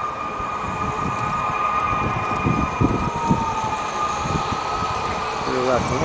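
Large-scale garden model train running: a steady high whine with a fainter tone above it, one line sliding slightly lower in the middle, over an uneven low rumble.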